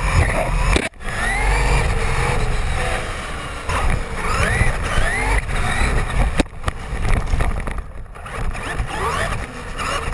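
Radio-controlled monster truck running flat out on pavement, its motor whine rising and falling in pitch again and again as it speeds up and eases off. Under it is a heavy rumble of tyres and wind on the microphone riding on the truck. The sound cuts out briefly just under a second in.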